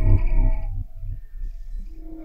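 Science-fiction sound effect of a starship's hyperdrive powering up, from a TV episode's soundtrack: a loud low rumbling that dies down within the first second, leaving a quieter low rumble with a faint hum.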